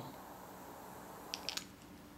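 Jet-torch lighter held to the cut end of paracord to melt it: a faint steady flame hiss, with three quick light clicks about a second and a half in, after which the hiss drops away.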